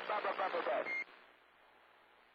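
A voice received over a CB radio, thin and cut off in the highs by the radio's speaker, ends about a second in with a short high beep; after that only faint receiver hiss.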